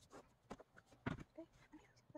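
Near silence broken by a few soft knocks and taps, the loudest about a second in, as a rolling pin is set down on the work mat and a plastic cookie cutter is placed on rolled salt dough.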